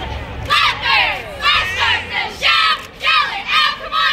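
A squad of cheerleaders shouting a cheer in unison: loud, clipped syllables in a steady rhythm, about two a second.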